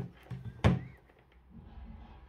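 A single sharp knock as a small object is handled on a wooden tabletop, followed by faint handling rustle.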